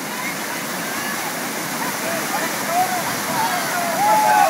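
Whitewater rushing through the concrete channel of an artificial slalom course, a steady, loud churn of water. From about halfway through, short gurgling tones rise and fall over it.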